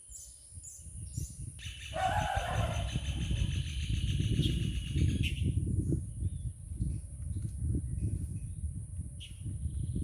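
Birds calling, with a dense trilling call from about two seconds in until about five seconds in. Under it run a steady high-pitched insect buzz and an irregular low rumble.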